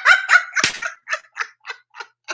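A woman laughing: a voiced start, then a run of short bursts, about three a second, growing fainter.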